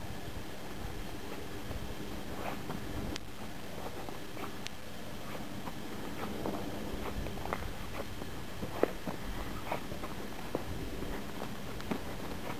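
Footsteps on loose gravelly ground, irregular short crunches over a steady background hiss. The steps become more frequent and distinct about halfway through.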